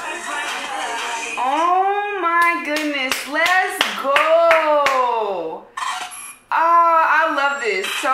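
A woman's long, drawn-out excited vocal exclamations, with several sharp hand claps in the middle, after the tail of a pop song's music in the first second or so.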